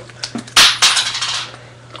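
Coins rattling in a wallet's coin purse as it is opened and handled: two sharp rattles about a quarter second apart, a little over half a second in, then dying away.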